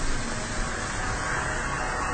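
Steady hiss-like background noise with no clear pitch or rhythm, running evenly under a pause in the narration.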